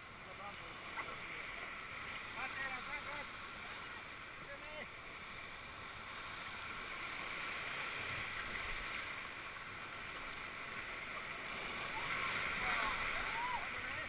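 Whitewater rushing and churning around an inflatable raft, heard from aboard the raft, growing louder near the end as the raft runs through rougher water. Faint voices call out now and then.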